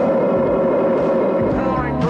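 Starfighter engine sound effect from the Star Wars Death Star battle: a steady, noisy drone that sinks slightly in pitch near the end.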